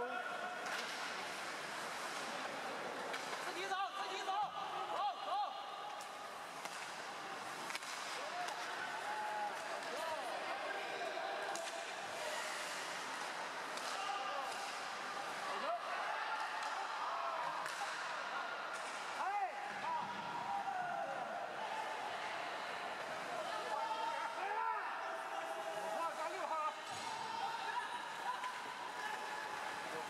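Ice hockey play in a crowded rink: a crowd of spectators chatting and calling out throughout, with occasional sharp knocks of sticks and the puck.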